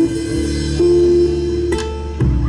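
Live band playing an instrumental passage of a zamba, guitar-led, with held notes that change about a second in and again near the end.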